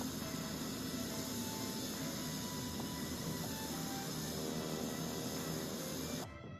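Steady noise of a Pilatus PC-12 turboprop on a gravel runway, with music playing under it; it cuts off abruptly at the very end.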